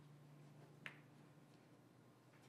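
Near silence: room tone with a steady low hum, broken once, a little under a second in, by a single short click.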